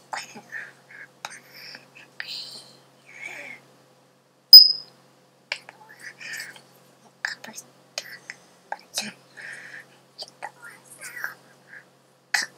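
Breathy mouth sounds, lip smacks and hand taps of a person signing in ASL, scattered short clicks and puffs with no spoken words; one loud sharp click with a brief high squeak about four and a half seconds in.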